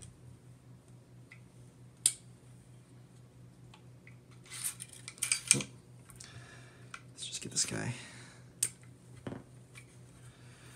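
Clicks and light metallic clinking of SIG SG 553 rifle parts, the upper receiver and barrel assembly, being turned over and handled by hand. There is a sharp click about two seconds in, then bunches of small clinks around the middle and again near the end.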